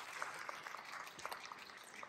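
Audience applauding, with separate claps heard over an even patter.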